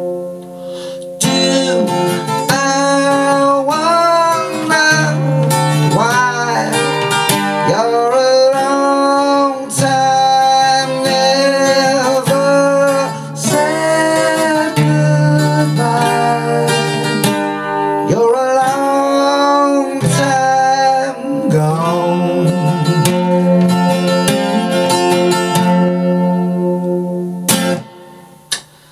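Steel-string acoustic guitar strummed and picked under a wordless sung melody. The music stops shortly before the end.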